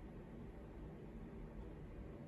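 Faint, steady room noise: a low hiss and hum with no distinct sounds in it.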